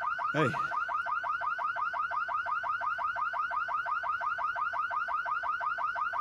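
Car alarm sounding continuously: a fast, steady series of short rising chirps, about seven a second.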